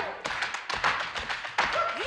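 Dancers' shoes tapping and stamping on a wooden stage floor in a quick, uneven run of beats, with no music playing.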